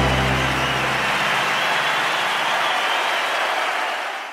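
Live audience applauding, a steady wash of clapping, as the band's last low note dies away in the first second.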